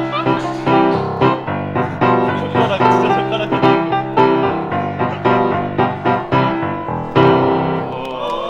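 Grand piano played four-hands by two players at one keyboard: a continuous run of chords and melody notes, with a loud chord struck about seven seconds in.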